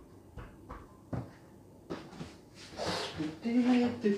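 Banana pieces dropped by hand into a glass blender jar, making a few separate soft knocks, then a short stretch of handling noise. Near the end comes a brief voice-like sound, the loudest part.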